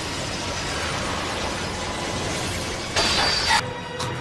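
Anime battle sound effects: a steady noisy rush, then a louder, brighter crash-like burst about three seconds in that cuts off suddenly just over half a second later.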